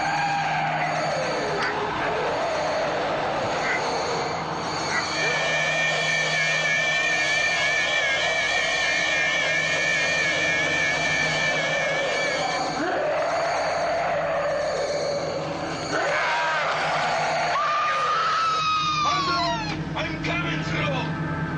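Electronic science-fiction monster effect: shrieking and wailing, with a warbling two-tone whine through the middle and falling glides near the end. It sits over a steady low hum and a dramatic film score.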